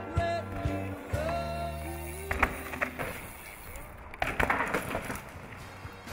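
Pop-song music playing and fading out over the first half. Then a mountain bike's tyres skid and scrabble on loose dirt, with a run of sharp knocks.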